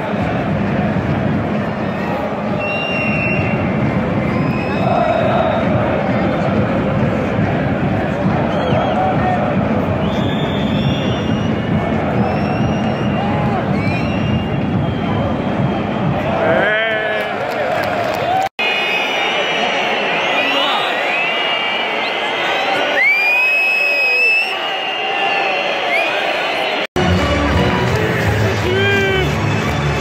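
Football stadium crowd in the stands: thousands of fans chanting and cheering in a steady, loud din, with shrill whistles repeatedly sounding over it, most of them in the second half. The sound drops out for an instant twice where clips are joined.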